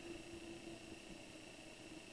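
Faint room tone: a steady low hiss with a thin, constant hum and a high whine underneath, and no distinct brush strokes.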